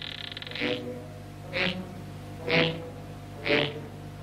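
Animated-film soundtrack: a held rasping tone stops under a second in, then short low sounds pulse about once a second over faint underscore music.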